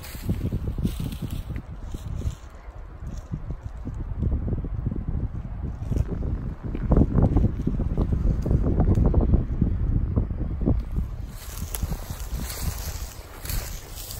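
Wind buffeting the microphone in gusts, a low rumble that builds to its loudest in the middle and then eases. Footsteps crunch through dry pine-forest underbrush beneath it.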